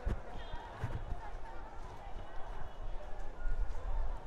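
Busy street ambience: voices of passers-by talking in the background, over a steady low rumble with scattered knocks.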